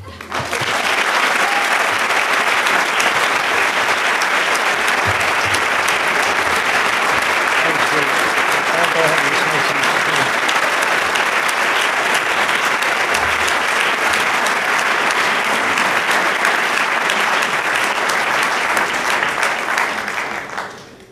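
A large audience applauding steadily and at length, the clapping fading away at the very end.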